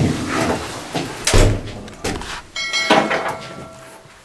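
A door being opened and let go: sharp handle and latch clicks, a heavy knock about a second and a half in, and a short metallic clank that rings briefly near three seconds in.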